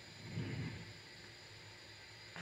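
Mostly quiet room tone, with one faint, brief low sound about half a second in as the trumpet is brought up to the lips.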